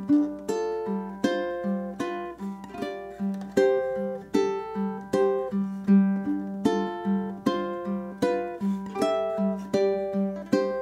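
Low-G ukulele played fingerstyle in a bluesy groove on G7 shapes: strummed chords alternating with plucked strings at a steady pulse, over a repeated low open G note.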